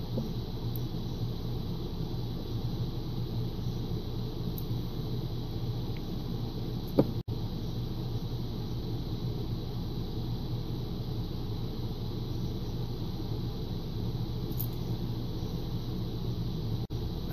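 A steady low hum with background noise runs throughout, and a brief short sound breaks in about seven seconds in.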